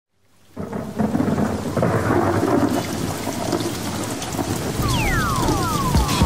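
Thunderstorm sound effect: steady heavy rain with low rumbles of thunder, fading in over the first second. Near the end, a cluster of falling whistling tones comes in over it.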